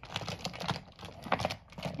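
Toy wooden-railway trains being handled and pushed across a wooden floor: an irregular clatter of small clicks and knocks from the wheels, couplings and fingers on the toys.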